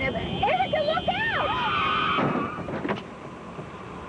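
A woman's voice with sharply rising and falling pitch, over a steady high-pitched squeal that stops abruptly about two seconds in, followed by a couple of short noisy bursts.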